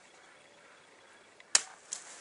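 Quiet, then a single sharp snap about one and a half seconds in as the rawhide bowstring on the Oregon ash bow breaks on the shot, followed a moment later by a smaller click.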